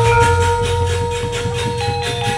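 A Javanese gamelan accompanying a wayang kulit play: two long ringing metal notes held over a deep low note that comes in at the start, with a fast, even beat of struck strokes.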